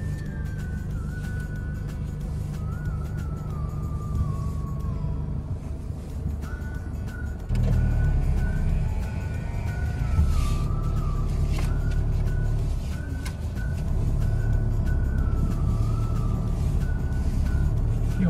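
Engine and road rumble heard inside the cab of a Toyota driving slowly on a dirt road, stepping up in loudness about halfway through, with background music over it.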